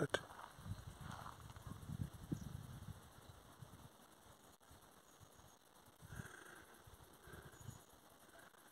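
Quiet outdoor ambience: a faint, irregular low rumble on the phone's microphone over the first few seconds, then near quiet with a couple of faint, brief mid-pitched sounds in the distance.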